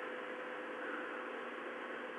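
An 80 W mercury vapour lamp running on 220 V mains, with a 200 W incandescent bulb as its ballast, giving a faint steady hum over a constant background hiss.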